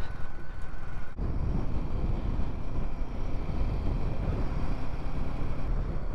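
Riding noise of a Royal Enfield Himalayan 450 at road speed: its single-cylinder engine running steadily under heavy wind rush on the microphone. About a second in the sound breaks off for an instant and comes back with more low rumble.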